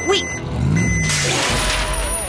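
Cartoon sound effect of a dump truck: its engine runs under two long reversing beeps, then from about a second in comes a rushing, rustling pour as the tipped bed dumps a heap of banknotes.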